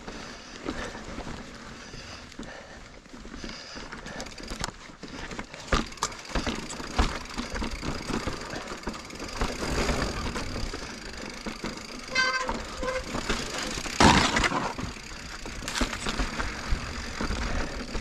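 Full-suspension 29er mountain bike (2021 Giant Reign) riding down rough rock: tyres rolling over slickrock with frequent knocks and rattles from the bike over ledges, under a steady rush of wind noise on the chest-mounted camera. A brief rapid buzzing ticking comes about twelve seconds in, and the loudest rush about two seconds later.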